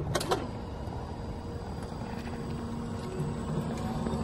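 Simai TE70 48 V electric tow tractor driving off over brick paving: a steady electric drive hum comes in about halfway, over the low rumble of its small tyres on the pavers. A couple of sharp clicks sound just at the start.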